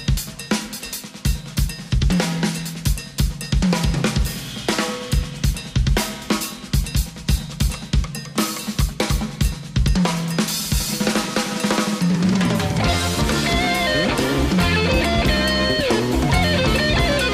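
Live band music led by a drum kit: a passage of rapid snare and bass-drum hits over a held bass line, then the fuller band with pitched instruments comes in about twelve seconds in.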